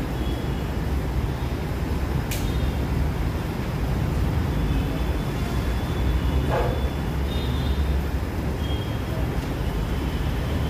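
Steady low background rumble with no speech, broken by one sharp click a little over two seconds in.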